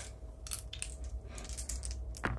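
Three gaming dice being handled for a roll, giving a few faint, scattered clicks.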